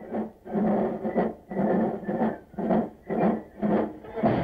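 A large crowd chanting in unison: short shouts on one pitch, about two a second, on old archival newsreel sound.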